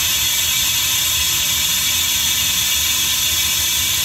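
Steady hiss with a low running hum from a diesel passenger train standing at the platform with its engines running.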